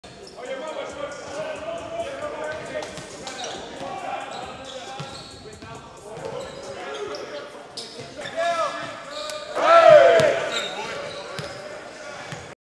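Basketballs bouncing repeatedly on a hardwood gym floor, echoing in a large hall. About ten seconds in comes a louder, brief pitched sound that arches up and down, the loudest moment.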